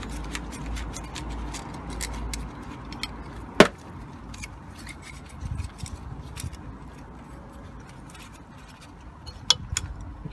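Light metallic clicks and clinks of steel shims and a pressed-steel pulley half being handled and lifted off a split V-belt pulley, with a sharp click about three and a half seconds in and another near the end.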